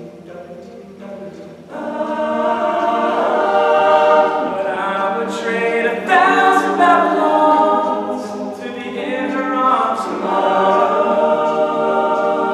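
All-male a cappella group singing, one lead voice over close backing harmonies. The voices are soft for the first couple of seconds, then the full group comes in loudly.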